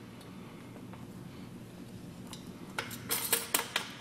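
A faint steady hum, then a quick run of light clinks and clatters about three seconds in, from hardware being handled while the check valve is fitted to a grinder pump.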